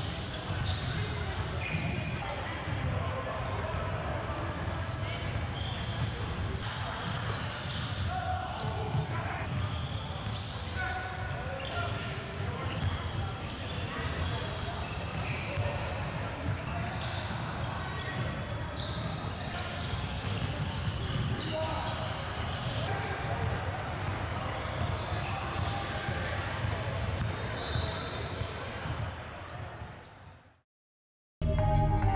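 Basketballs bouncing on a hardwood gym floor, echoing in a large hall, over indistinct chatter. The sound fades out at the very end.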